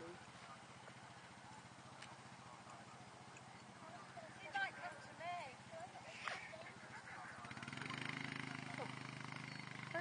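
Faint, distant talking around the middle, then an engine starts running steadily from about three-quarters of the way through, a low even hum.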